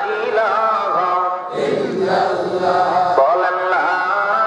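Men's voices singing a melodic religious chant in unison, held notes bending up and down, with a fuller, noisier stretch in the middle.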